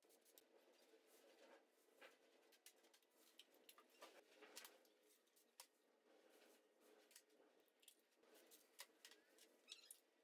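Near silence broken by faint, scattered metallic clicks and knocks: connecting rods and pistons being handled as they are pulled from a bare GM 3800 V6 block.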